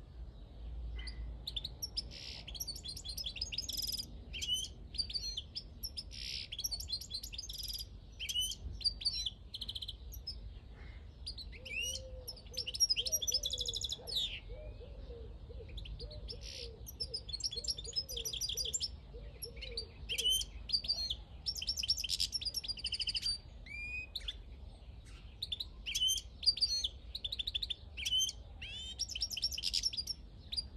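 Wild-caught European goldfinch singing: long, almost unbroken runs of high twittering, fast trills and quick rising and falling notes, with only short breaks between phrases.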